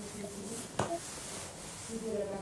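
Quiet, low speech in the background, broken by a single sharp click a little under a second in.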